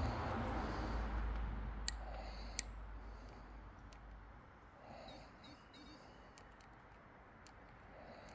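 Footsteps and scuffing over loose quarry rock: a rustling scramble, then two sharp clicks of stone on stone about two seconds in. It then goes quieter, with a few faint high bird chirps about five seconds in.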